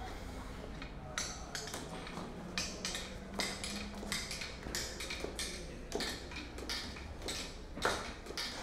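Footsteps climbing a stone staircase: a run of sharp, irregular taps about every half second.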